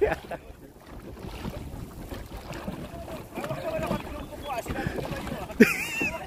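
Crew voices on a dragon boat: a laugh at the start, then low chatter over wind noise on the microphone, and a short loud call near the end.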